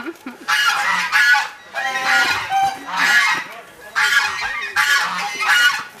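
Geese calling loudly and repeatedly, about one call a second.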